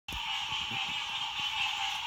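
Steady, dense night chorus of calling swamp creatures, an even high-pitched buzz. A few faint low thumps sound underneath.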